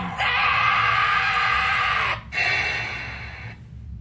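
Anime clip audio: a young male character's long, anguished scream over dramatic music, breaking off about two seconds in. A shorter second sound follows and fades away.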